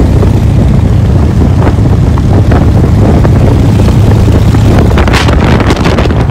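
Motorcycle riding at highway speed, recorded from on the bike: a steady low engine drone under heavy wind buffeting on the microphone, with crackling gusts growing near the end.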